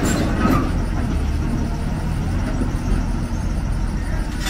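Diesel engine of a Hyundai 290 crawler excavator running under load with a steady low rumble as the machine drives up the trailer ramps.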